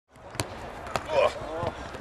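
Footballs being kicked during a training session: three sharp thumps of boot on ball, spaced well under a second apart, with a person's voice calling out briefly between them.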